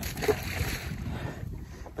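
Rustling handling noise as fabric brushes against the phone's microphone, a steady hiss that fades out near the end.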